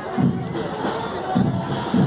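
Parade crowd chatter with a bass drum beating slowly and steadily, about three beats, keeping time for the marching students.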